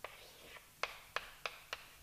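A few short, sharp clicks, about five in two seconds and unevenly spaced, over faint room tone.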